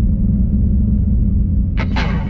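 A 1965 Chevy II Nova's 406 V8 with a solid mechanical cam running, a loud, low and uneven exhaust note. Guitar music comes in near the end.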